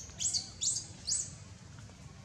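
A small bird chirping: four short, high chirps in quick succession within the first second and a bit, each a quick sweep in pitch.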